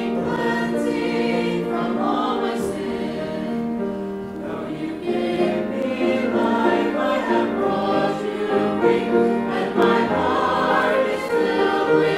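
Mixed-voice church choir of men and women singing a hymn in parts, growing a little louder in the second half.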